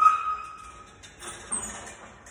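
A sharp metallic clank with a short ringing decay from the loaded barbell and its plates during a bench press rep, followed by a quieter hiss-like burst about a second and a half in.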